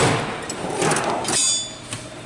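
Steel tool cart drawers being shut and pulled open: a sharp knock at the start, a sliding rattle, then a brief high metallic ringing of tools jostling together about a second and a half in.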